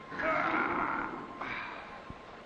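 A loud, drawn-out vocal cry of strain lasting about a second, followed by a shorter one.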